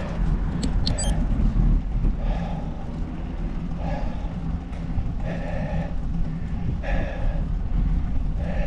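Steady wind and road rumble on a microphone riding along on a bicycle, with a few sharp clicks about a second in. A short noisy sound repeats about every second and a half.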